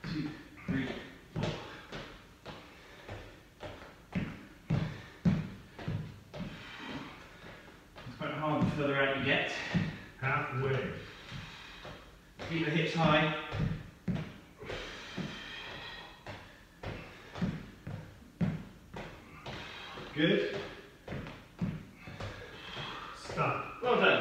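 Short stretches of a man's voice, not picked up as words, with scattered thuds and knocks of bodies and feet on foam exercise mats.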